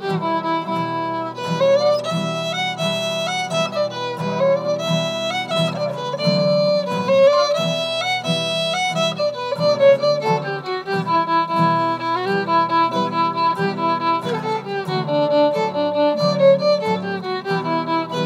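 Fiddle playing a melody over steadily strummed acoustic guitar chords.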